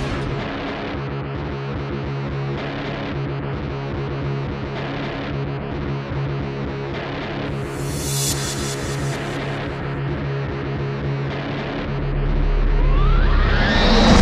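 Background music with sustained notes over a steady beat, building near the end with a low rumble and a rising sweep.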